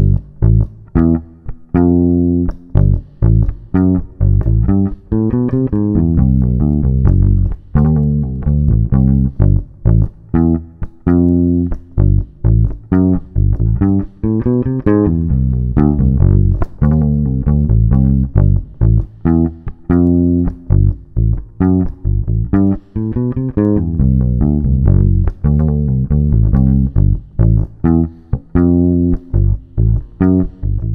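Fender electric bass guitar playing a rock riff on its own at a slow tempo. The notes are plucked one at a time with short gaps between them, with a few sliding notes, and the phrase repeats.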